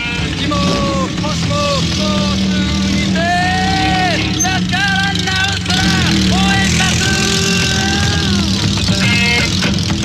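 Motorcycle engine running with a steady low drone while the bike is ridden. Drawn-out voices ride over it, each call sliding up and then falling away in pitch.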